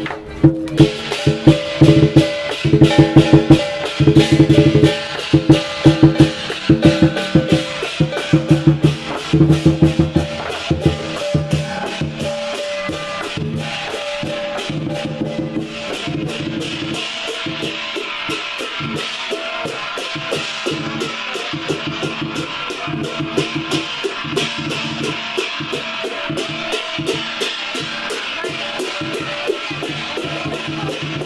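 Chinese lion dance percussion: a big lion drum and cymbals beating a fast, continuous rhythm. Heavy drum strokes stand out in the first half, then ease off about halfway into a steadier, brighter cymbal clatter.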